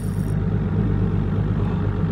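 A boat's engine idling with a steady low hum.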